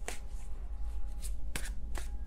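A tarot deck being shuffled by hand: a few quick, irregular card snaps and flicks.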